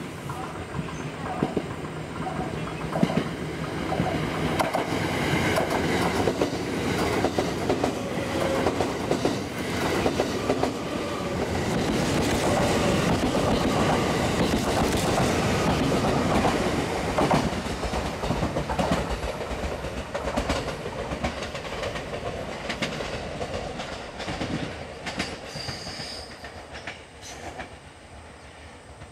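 Series 87 Twilight Express Mizukaze diesel-electric hybrid train running past, its wheels clicking over the rail joints. The sound builds to its loudest around the middle and fades toward the end.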